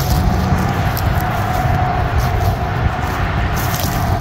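Wind buffeting the microphone: a loud, gusting low rumble, with a faint steady high tone running through it.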